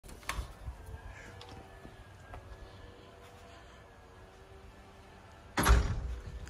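Sliding glass patio door being unlatched and slid open, with a sharp click from the handle latch near the start and a faint steady drone underneath. Near the end a sudden loud rush of wind buffets the microphone.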